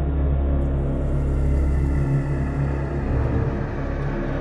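Intro of a progressive psytrance track: a deep, steady rumbling bass drone with layered sustained tones. A hissing sweep joins the drone about half a second in and fades away before the end.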